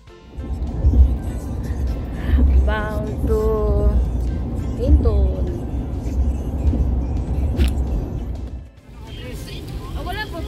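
Steady low road rumble of tyres and engine heard inside a pickup truck's cab at highway speed, with brief voices a few seconds in. Near the end the rumble drops away and a quieter in-car recording with a voice takes over.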